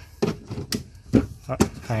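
A red plastic screw cap being fitted onto the filler opening of a white plastic piglet milk-feeding tank, giving four or five short, sharp plastic clicks and knocks.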